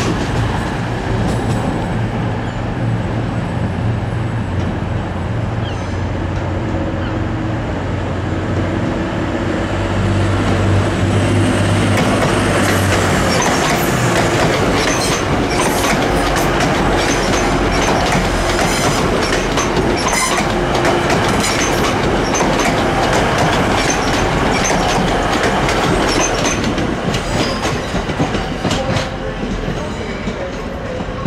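TransPennine Express Class 185 diesel multiple unit passing close by. For the first dozen seconds its diesel engines run with a steady low drone. Then it grows louder and the wheels clatter over the rail joints as the coaches go by.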